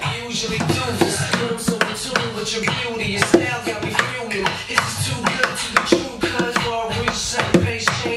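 Steel-string acoustic guitar played percussively: quick, syncopated slaps and strums on the strings and body, making a dense run of sharp hits mixed with ringing chords.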